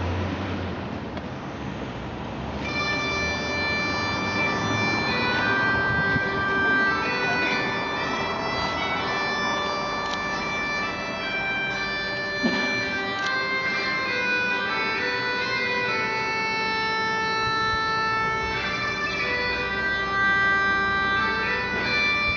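Bagpipes begin about two and a half seconds in, with a steady drone under a slow melody of long-held chanter notes.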